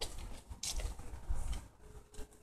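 Faint rustling and handling noise, with a low rumble and a few soft clicks.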